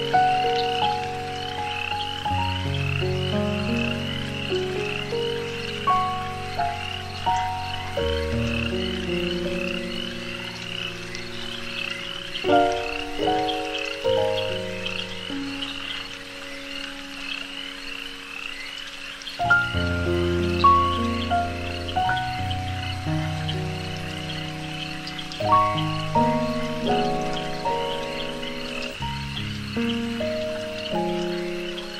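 A continuous chorus of frog calls, a steady run of high repeated croaks, over slow, sustained chords of ambient meditation music that change every few seconds.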